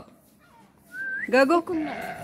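A short rising whistle, then a voice calling the name 'Jago' once, about a second and a half in, coaxing an animal to come out.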